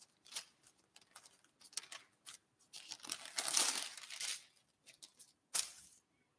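Pages of a Bible being flipped and turned by hand: a run of small papery rustles and crinkles, with a longer rustle from about three to four and a half seconds in and a short one near the end.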